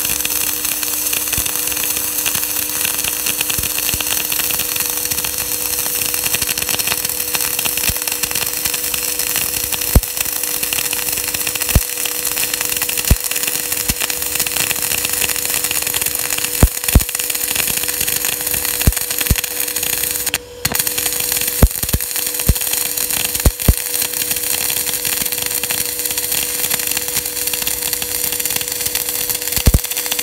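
Electric arc welding on steel channel: a steady crackling hiss from the arc, broken by sharp spatter pops every few seconds, with the arc cutting out briefly about twenty seconds in. A steady low hum runs underneath.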